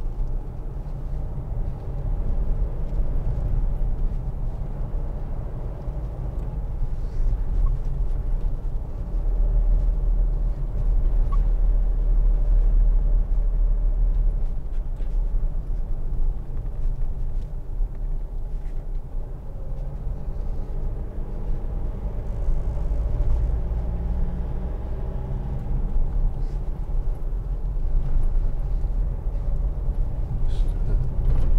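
Interior drive noise of a Mitsubishi L200 pickup on the move: a steady low rumble from its 2.5-litre four-cylinder turbodiesel and the tyres on a wet road. It grows louder for a few seconds from about nine seconds in.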